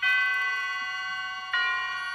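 A bell-like chime struck twice, the second strike about a second and a half in, each note ringing on and slowly fading.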